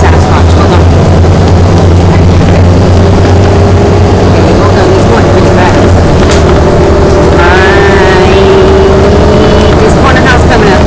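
Bus engine and road noise heard from inside a moving bus: a steady low drone with a fainter hum above it. Voices are faintly heard in the background.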